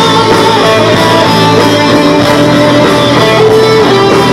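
Live rock band playing an instrumental passage: electric guitars and bass, with a melody of held guitar notes over the band.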